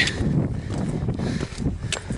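Wind buffeting a handheld camera's microphone, a steady low rumble, with a couple of short clicks near the end.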